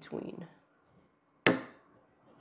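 Steel nippers snapping through a ceramic coral frag plug: one sharp crack about one and a half seconds in, after a short rough crunch as the jaws are squeezed.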